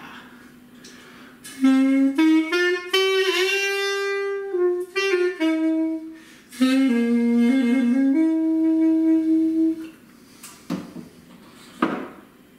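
Sax Minica, a small black reed pipe with a saxophone-style mouthpiece, played solo: a short riff in two phrases with a reedy, saxophone-like tone, the first climbing step by step with a bent note, the second ending on a long held note.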